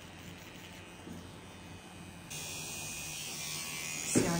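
Rotary pen tattoo machine running with a steady buzz while shading skin; about two seconds in, the buzz steps up louder and brighter.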